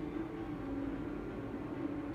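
Quiet steady background hum with no distinct event: room tone.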